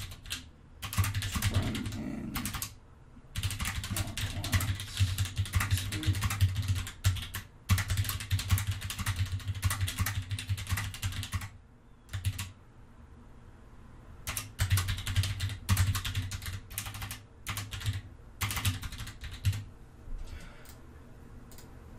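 Typing on a computer keyboard in fast runs of keystrokes, broken by short pauses and one longer lull of about three seconds a little past halfway.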